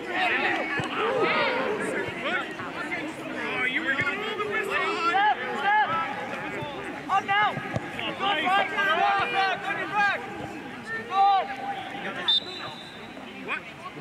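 Players and spectators shouting and calling on a soccer field, several voices overlapping throughout. A short high whistle sounds near the end.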